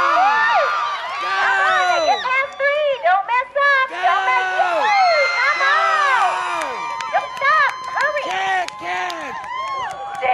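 Spectators yelling and cheering a horse and rider on during a barrel-race run, several high voices shouting and whooping over one another, with one lower voice calling out again and again.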